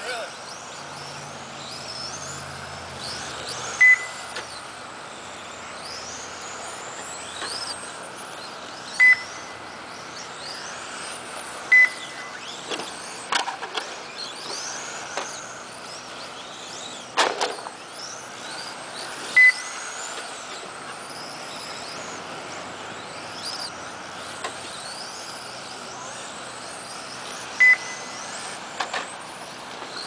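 Several radio-controlled touring cars racing, their motors whining up and down in pitch as they speed up and brake through the corners. A short electronic beep from the lap-counting system sounds five times, the loudest thing heard, as cars cross the timing line.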